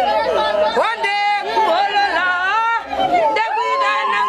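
A group of excited, high-pitched women's voices calling out and singing over one another, some notes held, with no clear words.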